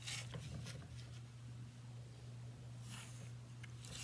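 Faint scratching of a pencil drawn along a ruler on paper, in short soft strokes near the start and again about three seconds in, with the brush of the paper sheet sliding on the desk as it is turned near the end. A low steady hum runs under it.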